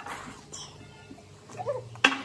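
Children eating spicy noodles, slurping and breathing noisily, with a short high whimper near the end, a reaction to the heat of the noodles.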